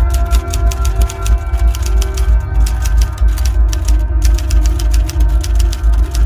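Typewriter keys clacking in a quick run, about seven strikes a second, with two brief pauses, typing out a caption. Underneath is soundtrack music with sustained tones and a heavy low bass.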